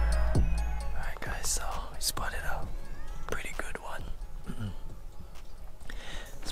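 Music fading out at the start, then a man whispering close to the microphone.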